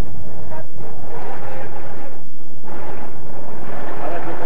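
Wind buffeting an outdoor camcorder microphone: a loud, steady rumble.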